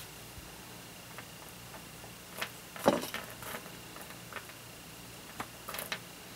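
Small metal screws clicking against each other and the paper as fingers sift through a pile of them: a handful of light, separate clicks, the loudest about three seconds in, with a small cluster near the end.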